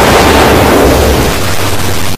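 Loud, heavily distorted audio of an effects-edited logo animation: a steady, noisy roar with a deep rumble, with no clear tune left in it.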